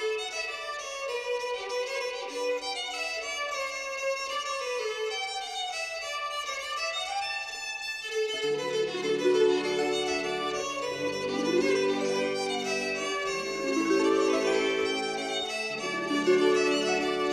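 Piedmontese folk music: a single fiddle-like string melody, joined about eight seconds in by lower sustained accompanying notes that fill out the sound.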